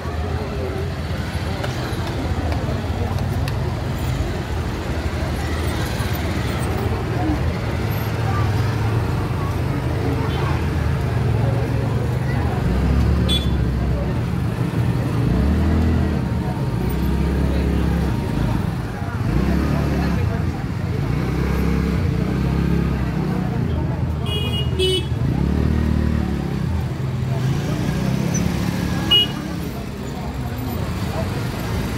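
Crowd talking over a motor vehicle engine running close by, a steady low rumble that grows stronger and rises and falls from about halfway through.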